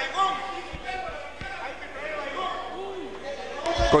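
Several voices talking over one another across a legislative chamber, with a few dull low thumps, the loudest just before the end.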